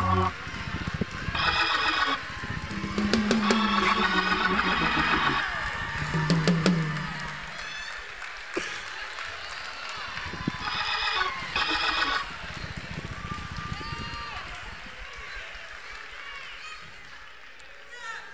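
Church band music, keyboard notes with drums, played in answer to a sermon's climax, with congregation voices shouting over it. It is loudest in the first several seconds and dies down over the second half.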